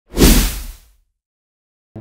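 A swoosh sound effect with a deep low rumble for a logo intro, swelling suddenly and fading away within about a second.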